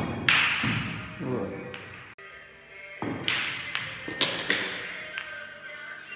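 Pool break shot: the cue ball cracks into the racked balls, which clatter apart, followed by two more sharp ball strikes about three and four seconds in. Background music plays underneath.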